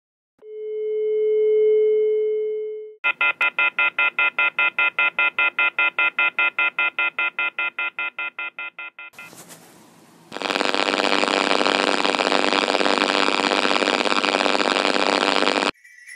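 Telephone sound effects: a steady tone that swells and fades over about two seconds, then a rapid pulsing ring that fades away. After a short hiss comes a loud steady tone that cuts off suddenly just before the end.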